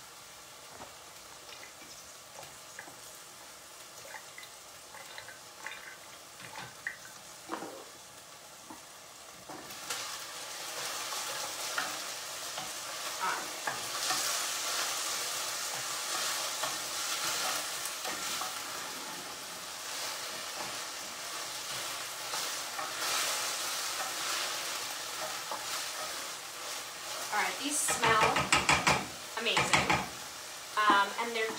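Onions frying in a stainless steel skillet, sizzling while being stirred with a wooden spatula; they are just starting to brown. The sizzle is faint at first and swells about ten seconds in, and near the end the spatula scrapes and knocks against the pan several times.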